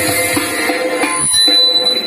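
Live Khorezm lazgi dance music on electric keyboard with a quick, steady drum beat, which drops out into a brief break a little past the middle while a thin high note holds.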